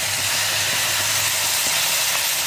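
Boiling water poured into a hot nonstick pan of dry chicken and spice masala, hissing and sizzling steadily as it hits the pan and turns to steam.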